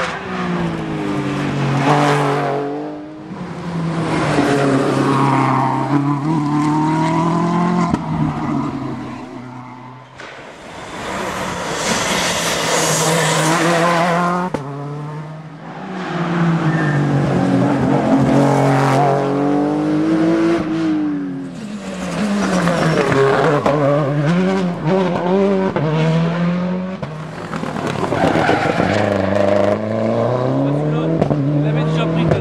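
Rally cars racing past one after another, the first a Porsche 911. Each engine revs up through the gears, with its note dropping back at each shift and on braking, then fades before the next car arrives. There is a burst of tyre and road hiss midway through.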